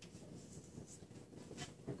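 Chalk writing on a blackboard: a few short, faint scratches and taps as symbols are chalked.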